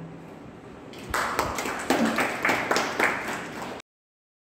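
The last note of an electronic keyboard dies away, then a small audience claps for about three seconds before the sound cuts off abruptly.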